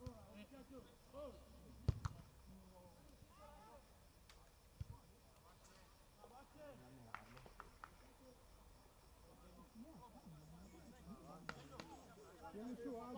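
Faint, distant voices of footballers calling out across an outdoor pitch, with one sharp knock about two seconds in and a softer one near five seconds.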